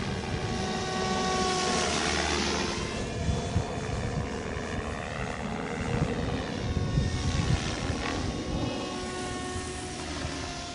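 Stretched MSHeli Protos electric RC helicopter on 470 mm main blades, governed at about 2300 rpm head speed, flying overhead: a whine from the motor and gears, with a rotor-blade whoosh that swells twice as it manoeuvres and a pitch that wavers up and down.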